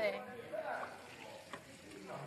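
A pause in conversation: steady low hiss of room noise with a faint, distant voice and a small click about one and a half seconds in.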